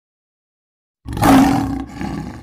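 Lion roar of the MGM trademark logo, from a film soundtrack. One loud roar starts about a second in and breaks off briefly just before a second roar begins near the end.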